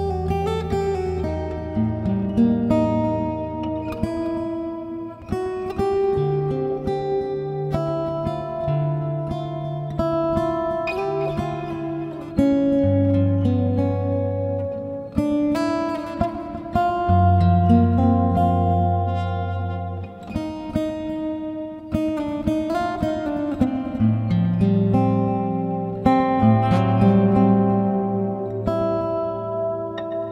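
Fingerstyle acoustic guitar playing an instrumental: a plucked melody over bass notes that ring for a few seconds each.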